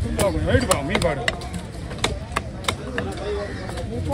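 A large fish-cutting knife chopping through a wahoo on a wooden log chopping block: a series of sharp chops, several in quick succession through the first three seconds.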